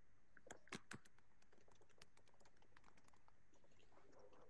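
Faint typing on a computer keyboard: a few sharper clicks about half a second to a second in, then a quick run of light key taps.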